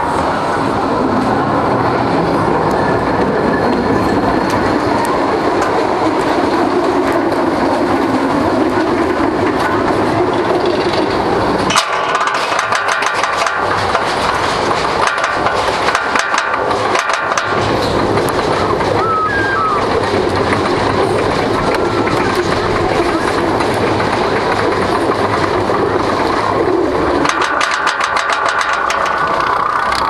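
RCCA/Premier Rides wooden roller coaster train rolling out of the station with a steady rumble of wheels on wooden track, then climbing the chain lift hill. From about a third of the way in, the lift chain clatters and the anti-rollback dogs click in rapid runs, thickest near the top.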